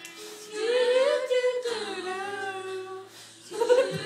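Young women singing a slow pop ballad a cappella, holding long notes, with a short pause before a new phrase near the end.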